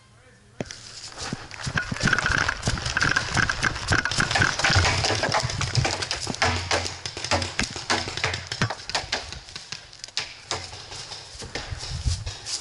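Running footsteps crunching through dry leaf litter and sticks, with hard breathing, starting about half a second in.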